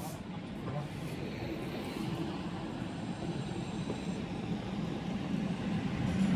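City street ambience: a steady hum of traffic with indistinct voices of people nearby.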